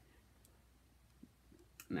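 Mostly quiet, with faint clicks from a large hardcover comic omnibus being handled and pressed open: one a little past a second in and another near the end.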